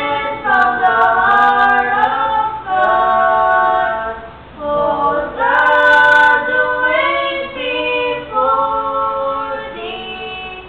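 Young voices, a girl and a boy, singing a praise song together without accompaniment, in held phrases with short pauses for breath between them.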